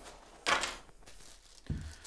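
Unboxing items being handled on a table: a short rustle about half a second in, then a soft low thump near the end as the plastic-wrapped binoculars are taken hold of.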